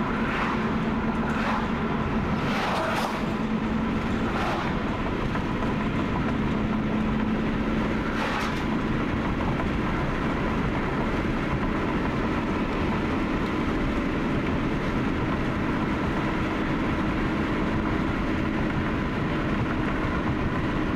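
Car cabin road noise at highway speed: a steady rumble of tyres and engine with a low hum, broken by a few brief knocks in the first few seconds and once more about eight seconds in.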